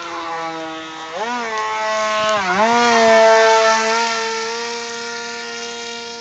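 Skyartec BL002 brushless heli motor and propeller of a foam RC F-16 model whining, a steady high-pitched tone. Its pitch dips and recovers twice in the first couple of seconds, then holds level, loudest around the middle.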